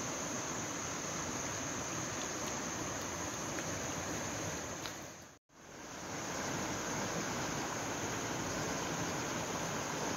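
Swollen, fast-flowing river in mild flood, a steady rushing noise, under a continuous high insect drone. Both fade out a little past the middle, drop to silence for a moment, and fade back in about a second later.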